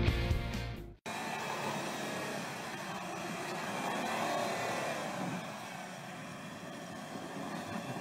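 Rock guitar music that cuts off abruptly about a second in. It is followed by an Audi Q7 Quattro's engine working under load as its wheels spin through snow on a snowbank: a steady, noisy rush that swells a little around the middle.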